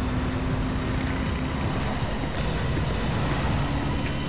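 Engine and road noise of a moving van, heard from inside the cabin as a steady low rumble.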